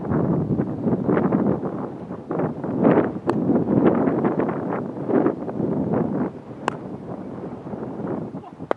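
Wind buffeting the camera microphone in uneven gusts, with a couple of short sharp clicks.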